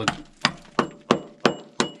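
Six quick taps of a metal hand tool on the rock of an old mine drive, about three a second, some with a light ring after the strike: sounding the rock to tell solid ground from rock cracked by blasting.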